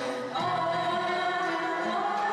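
Turkish classical music choir and ensemble with violins performing a song in makam karcığar, voices and strings holding long notes. A new phrase starts about half a second in.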